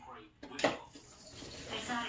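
A single short clatter about half a second in, from items being handled on a kitchen counter, followed by faint low talk.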